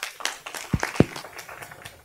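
Scattered applause from a small audience: sparse, irregular individual claps. Two low thumps land a little under a second in, the second the loudest sound.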